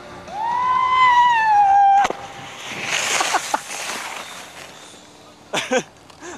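A person's long, high yell, held for almost two seconds with a slight rise and then a slow fall, cut off suddenly. A rough hiss follows, and a few short voice sounds come near the end.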